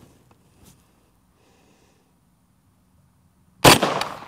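A single rifle shot from an M1 carbine firing a .30 Carbine round, near the end, with a short echo dying away over about a second.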